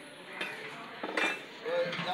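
A few clinks and knocks of metal on large aluminium cooking pots.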